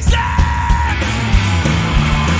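Live rock band playing loudly with drums, cymbals, electric guitars and bass. Over the first second a single yelled vocal note is held, then the band plays on under no voice.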